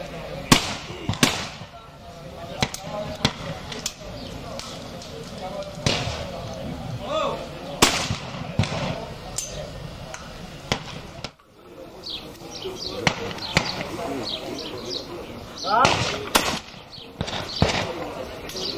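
Shotguns firing at clay targets: a series of sharp shots from stations along the shooting line, some in quick pairs about a second apart, with brief shouted calls for the target between them.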